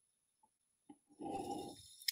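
A short breathy exhale after a sip of whisky, preceded by a couple of faint mouth clicks.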